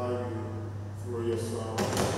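A priest's voice praying aloud in short, held phrases, then a single knock near the end.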